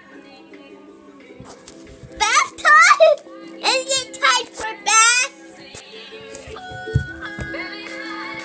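Background music with steady held notes. In the middle a child vocalizes loudly and high-pitched in several short sliding-pitch bursts, with no words. A short thump comes near the end.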